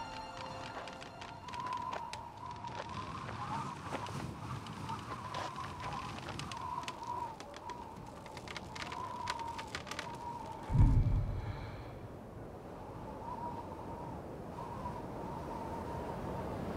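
Sparse film soundtrack: a quiet, wavering high sustained tone with scattered faint clicks. About eleven seconds in comes one deep boom, the loudest sound, which dies away within a second.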